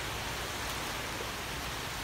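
Steady, even hiss of surf washing on a sandy beach.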